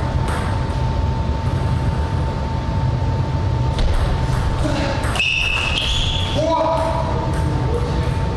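Table tennis rally: the celluloid-type plastic ball clicking off rubber paddles and the table, with a few short high squeaks about five to seven seconds in, over a steady hall hum.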